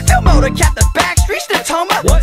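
Bay Area hip hop track playing: a drum beat with deep bass hits at a regular pulse and a bending melodic line over it.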